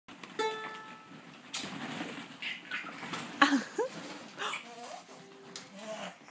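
A single ukulele note is plucked and rings briefly near the start. Then plastic play balls rustle and clatter in a ball pit, with a few short rising baby squeals in the middle.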